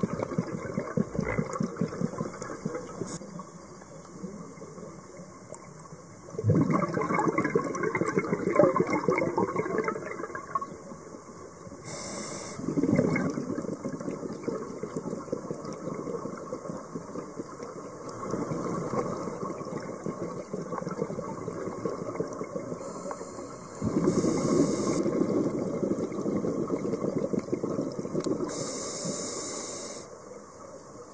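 Scuba diver breathing through a regulator underwater: crackling bursts of exhaled bubbles every five or six seconds, about five in all, with short high hisses of inhalation between them.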